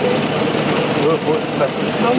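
Several people talking at once over the steady running of idling car engines.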